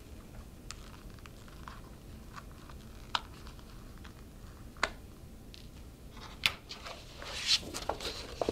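Sparse light clicks and taps as staples are pried out of the fold of a paper music score with a metal micro spatula, then paper rustling as the score is picked up near the end.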